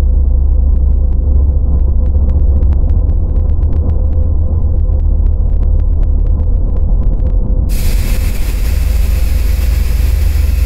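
End-screen soundtrack: a loud, deep rumbling drone with a steady hum and scattered faint ticks. It is muffled at first and suddenly opens up into a bright hiss about eight seconds in.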